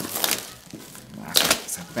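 Clear plastic shrink wrap crinkling and tearing as it is peeled off a cardboard retail box, in irregular crackles with a louder rip about one and a half seconds in.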